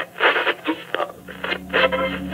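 Voice chatter through a radio filter, like walkie-talkie or dispatch talk, in the outro of a hip-hop track. A low steady drone enters about a second in.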